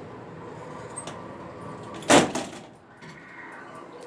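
Sliding doors of a Dover hydraulic elevator reopening after the door safety edge is pushed, with a single loud clunk from the doors about halfway through over a steady hum, then a faint whine from the door operator.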